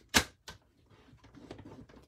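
Paper trimmer scoring cardstock: a sharp plastic click, a smaller click a moment later, then faint scraping as the card is scored.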